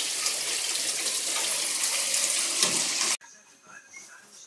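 Heavy rain pouring down, a steady hiss that cuts off suddenly about three seconds in, leaving quiet room tone.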